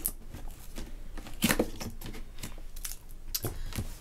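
Scissors cutting through the tape on a cardboard box: a run of irregular snips and scraping cuts, with cardboard rustling as the box is handled.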